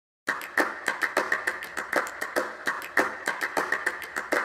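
A fast, uneven series of sharp clicks or taps, about five or six a second, starting just after a moment of silence.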